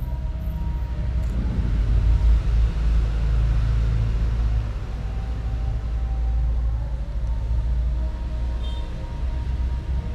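A steady low rumble, loudest from about two to four and a half seconds in, under a few faint held tones of background music.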